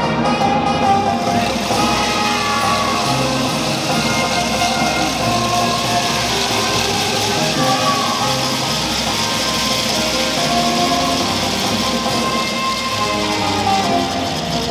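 Marinera norteña played by a brass band, with held horn notes over a steady beat. A noisy wash lies over the music from about a second and a half in until shortly before the end.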